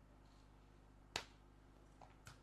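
One sharp slap of a hand striking a beach volleyball on the serve, about a second in, against near silence.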